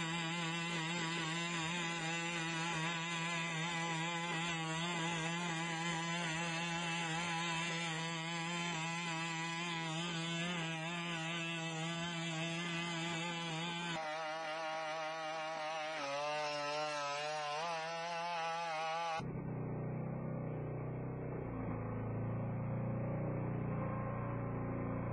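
BigDog robot's two-stroke engine and hydraulic power unit running at a steady, buzzing drone, its pitch wavering with the load of each stride. The sound changes abruptly twice, and about five seconds before the end it becomes a duller, lower recording.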